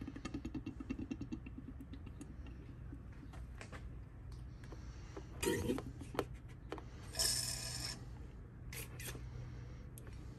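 Transmission fluid being hand-pumped from the bottle up a hose into the transmission fill hole: a quick run of soft pulses at first, then scattered clicks and knocks of the pump and fitting, with a short hiss about seven seconds in. A steady low hum lies underneath.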